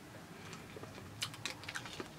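Faint room tone, then a run of small, quick clicks in the second half: a chip of hard homemade sugar lolly being crunched between the teeth.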